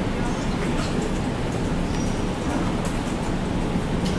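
Steady room noise: an even low rumble, with a thin high whine that comes and goes and a few faint clicks.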